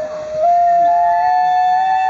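Shinobue, a Japanese bamboo transverse flute, playing a slow melody: clear held notes that climb step by step.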